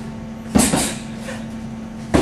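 A sharp slap of a taekwondo strike landing in a partner drill, doubled in quick succession about half a second in, over a steady low hum.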